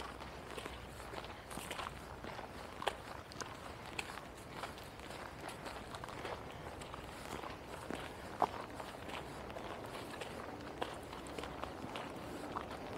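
Footsteps walking along a dirt forest trail strewn with dry leaves, a steady run of faint crackles with a few sharper clicks.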